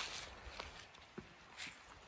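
Faint footsteps in dry fallen leaves: a few soft, scattered crunches over quiet outdoor background.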